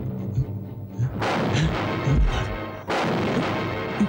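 Two loud, booming dramatic sound-effect hits over suspense music, the first about a second in and the second just before three seconds in, each ringing on with a sustained tone.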